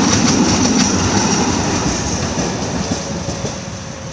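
A Budapest tram passing close on its rails, a rumble with a few wheel clicks early on, fading as it pulls away.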